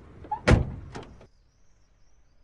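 Two sharp impact hits: a heavy thump about half a second in, the loudest moment, and a lighter hit about a second in. The sound then cuts off suddenly, leaving only faint hiss.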